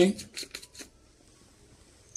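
Sweet paprika flakes being shaken from a spice container: a quick, even run of light rattling clicks that fades out within the first second, followed by faint room tone.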